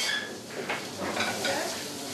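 Food frying and sizzling in pans over gas burners, with a light clatter of pans and utensils.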